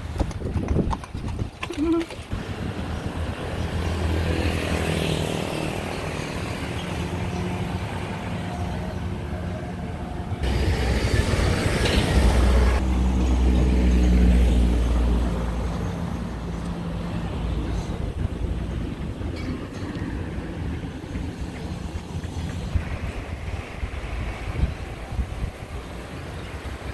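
Street traffic along a road: a horse's hooves clip-clop on the pavement as a horse-drawn carriage passes near the start, then vehicle engines hum past. In the middle a heavy vehicle's low rumble builds, peaks and fades.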